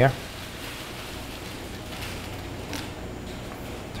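Steady low background hiss with a faint click or two as the metal tip assembly of a butane soldering iron is unscrewed by hand.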